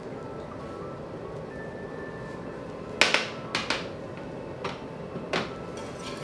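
Soft background music; from about halfway in, a handful of sharp knocks, the first the loudest, from kitchen utensils striking a stainless steel saucepan as vanilla paste goes in.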